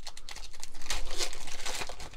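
Foil wrapper of a trading-card pack being torn open and crinkled by hand, a quick run of crackles that is loudest about a second in and again near the end.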